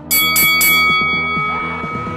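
A bell-like chime dings three times in quick succession and rings on, fading, marking the switch to the next number. Background music with a steady beat plays underneath.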